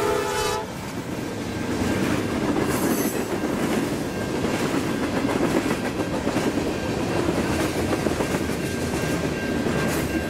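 Canadian National freight train: the locomotive horn's multi-tone chord cuts off about half a second in. Then a long string of hopper and tank cars rolls past with a steady rumble and clickety-clack of wheels on the rail.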